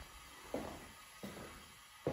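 Two soft footsteps on a laminate floor in a quiet, empty room.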